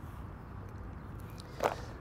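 Quiet outdoor background: a faint steady hiss and low hum, with one brief voice sound, like a breath or the start of a word, about one and a half seconds in.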